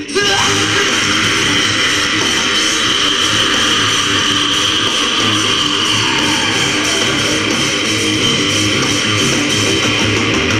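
Rock band playing live with electric guitars, bass and drums. The band comes back in loud right after a brief dip at the start, then plays on steadily with a held high guitar note over the top.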